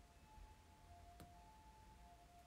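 Near silence: room tone with a faint steady high tone and a single soft click a little past the middle.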